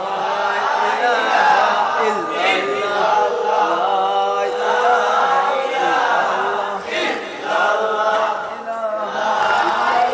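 A crowd of many voices chanting zikr together, the voices overlapping in a continuous chant.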